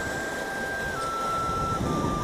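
Low rumble of wind buffeting the microphone, with a faint thin high tone held steady that steps down in pitch twice, about a second in and near the end.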